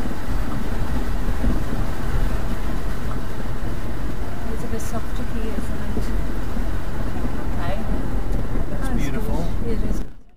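A 4WD vehicle driving slowly up a shallow creek, its engine running under a steady rumble of tyres and water, heard from inside the cab.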